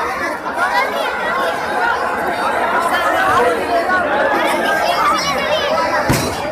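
A large crowd talking and calling out all at once: a dense, steady chatter of many overlapping voices.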